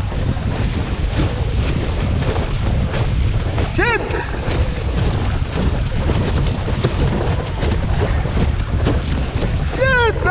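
Wind buffeting the microphone over the rush and splash of water along a windsurf board's hull as it sails at speed. A short vocal call about four seconds in.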